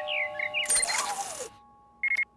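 Electronic sound effects of a cartoon smart-home door system scanning its owner: a few quick chirping beeps, then a hissing scan sweep about a second long that fades out, over held synth notes.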